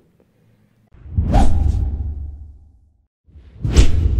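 Two whoosh sound effects from the animated channel outro. The first swells in about a second in and fades away over nearly two seconds; the second is sharper and comes near the end.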